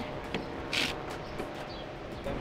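Low, steady outdoor background noise with one short hiss a little under a second in.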